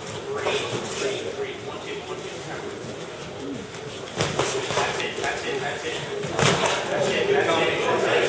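Boxing gloves landing during a sparring exchange: a few sharp thuds, the loudest about four and six and a half seconds in, over a murmur of onlookers' voices.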